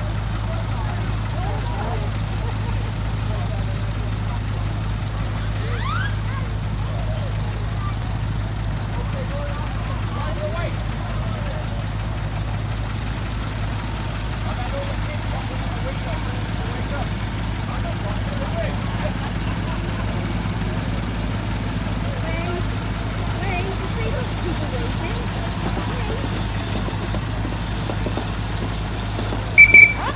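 Steady low hum of vintage engines running at an outdoor show, with people talking in the background. Near the end a sudden, loud, short high-pitched blast sounds, like a small steam whistle.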